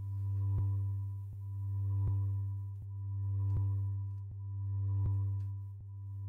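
Marimba C1 sample in Arturia Pigments' sample engine, held and looping back and forth (ping-pong loop). It gives a steady low tone that swells and fades about every one and a half seconds, with faint regular clicks.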